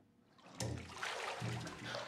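Bathwater splashing and sloshing as someone surges up out of a full bathtub, starting about half a second in after near silence.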